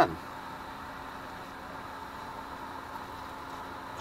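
Steady low hiss with a faint hum underneath, with no distinct knocks, clicks or other events.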